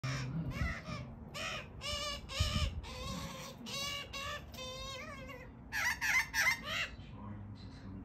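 Australian magpies calling from a roof: a run of short, wavering warbled calls about two a second, with a few louder, harsher calls about six seconds in, stopping about seven seconds in.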